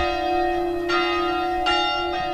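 Church bells ringing, a new stroke about every second, each one ringing on into the next.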